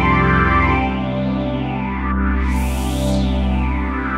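Xpand!2 'Swoosh Pad' synthesizer pad holding a chord, with a filtered whoosh sweeping up and down over it about every two seconds, brightest about three seconds in.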